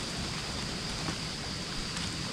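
Steady outdoor background hiss with a thin, constant high-pitched tone running through it; no distinct handling sounds stand out.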